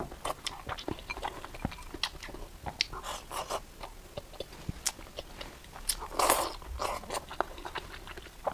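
Close-miked chewing of meat-stuffed green pepper and rice: a steady run of short wet mouth clicks and smacks, with a louder noisy burst about six seconds in.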